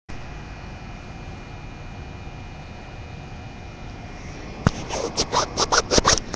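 Steady low background noise, then about four and a half seconds in a sharp click followed by a quick run of rubbing strokes, several a second: a phone's camera lens being wiped clean, the wiping rubbing right against the phone's microphone.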